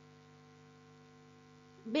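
Faint steady electrical hum with a row of even overtones, the recording's background noise. A woman's voice starts just before the end.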